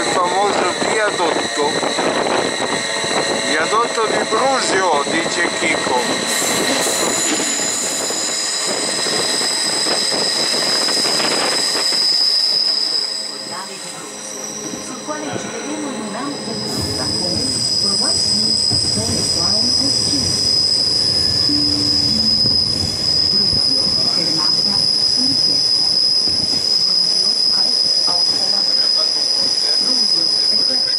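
Bernina Express train of the Rhaetian Railway running on a tight curve, its wheels squealing against the rails in a steady high screech over the rumble of the carriages, heard from inside a carriage. The squeal eases briefly about halfway through, then returns.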